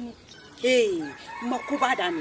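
A rooster crowing once: one loud, short call that falls in pitch, about half a second in.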